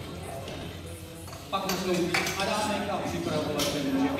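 Indistinct voices and music in a large hall, starting about a second and a half in, with a few sharp metallic clinks of barbell plates as loaders change the weight on the bar.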